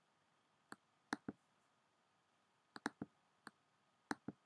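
Computer mouse clicking, about seven sharp clicks, several in quick pairs, against near silence.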